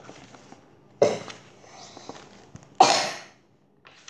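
A child coughing twice, a short cough about a second in and a louder one near three seconds, each dying away within about half a second.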